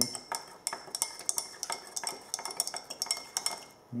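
Metal spatula clinking and scraping against the inside of a glass beaker, a quick irregular run of ticks with a ringing glass tone, as copper(II) oxide powder is stirred into hot sulfuric acid.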